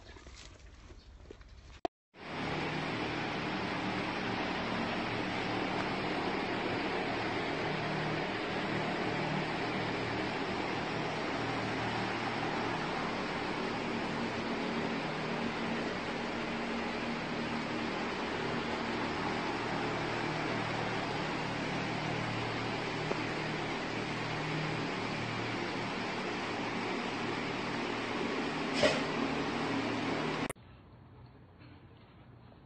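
Steady machine hiss with a faint low hum, unchanging throughout, with one short click near the end.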